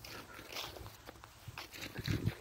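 Faint, irregular footsteps on grass scattered with dry fallen leaves, with soft rustles and crunches.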